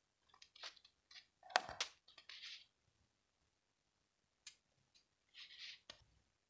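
Faint handling noises of an action camera on a cardboard box: scattered light clicks and short scrapes, the loudest about one and a half seconds in, and a brief rustle near the end.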